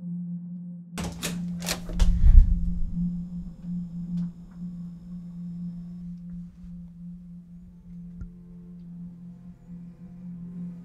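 Film score: a steady low drone tone, with a quick cluster of sharp hits about a second in that ends in a deep boom, the loudest moment. Faint high tones hang on after it.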